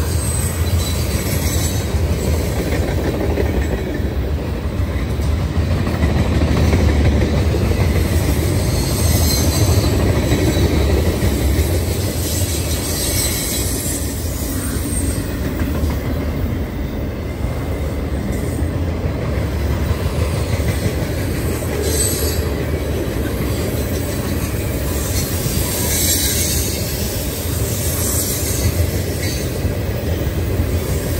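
Mixed freight cars of a manifest train rolling past at close range: a steady rumble and clatter of steel wheels on rail, with brief higher-pitched wheel noise coming and going every few seconds.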